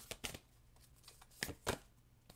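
Playing-card-sized oracle cards being handled, with a few light, short flicks and snaps of card stock as a card is drawn from the deck: two near the start and a quick cluster about a second and a half in.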